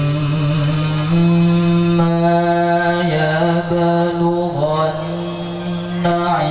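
Male reciter chanting the Quran in the melodic tilawah style into a microphone, holding long drawn-out notes with ornamented turns in pitch.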